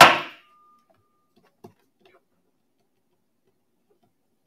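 Auctioneer's gavel struck once, a single sharp knock with a brief ringing tail, bringing the hammer down to close the sale of the lot.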